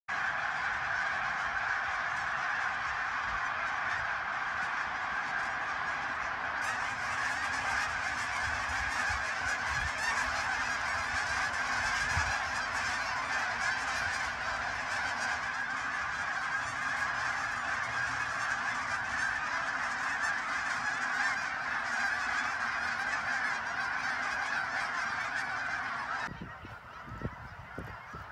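A large flock of migrating geese honking overhead, a dense, steady chorus of many overlapping calls. It stops suddenly near the end.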